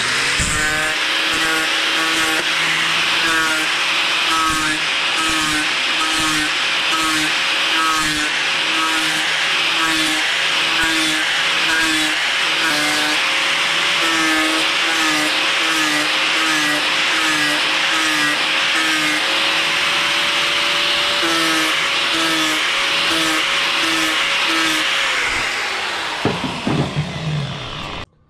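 Electric angle grinder running under load as its disc grinds casting flash off the cooling fins of a cast motorcycle cylinder barrel. The motor tone wavers and pulses about twice a second as the disc is pressed on and eased off the fins, over a steady grinding hiss. Near the end the grinder is let off and spins down.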